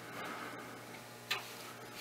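Quiet room tone with a low steady hum and a few faint ticks, and one sharper click a little past the middle.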